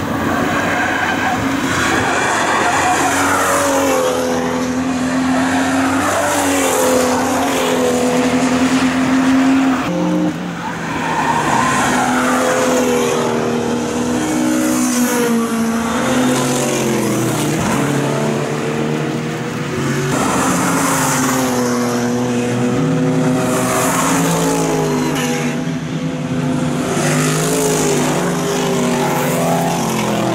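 GT and touring race cars driving past in groups, engine notes overlapping, their pitch rising and falling and stepping with gear changes as one pass follows another.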